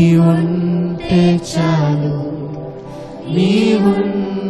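Live Christian worship song: a male lead voice singing long held notes over keyboards, with the worship team of singers.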